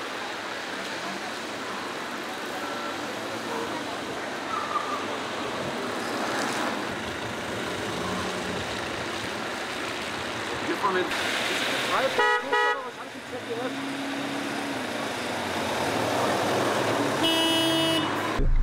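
City traffic on a wet road, a steady hiss of tyres on wet asphalt, with a car horn sounding briefly about twelve seconds in and again near the end.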